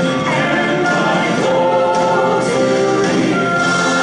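Music with a group of voices singing together in long, held notes.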